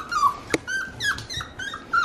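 Eight-week-old cavapoo puppy whining and crying in its crate: a rapid string of short, high, falling whimpers, several a second, with one sharp click about a quarter of the way in. It is crying to be let out during crate training, wanting to play and be with its owner.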